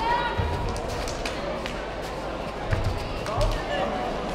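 Kickboxing bout on foam mats: a few dull thumps from feet and kicks landing, with some short sharp slaps, under shouting voices.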